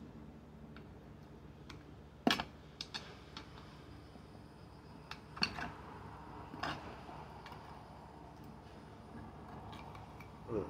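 A few sharp metallic clicks and knocks, the loudest about two seconds in and others around the middle, from a screwdriver knocking against the metal wheel rim while a small mower tire is worked off by hand.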